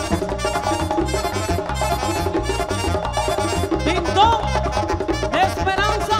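Live merengue típico band playing: button accordion and saxophone over tambora drum, congas and electric bass in a steady, fast dance rhythm, with a few sliding notes in the second half.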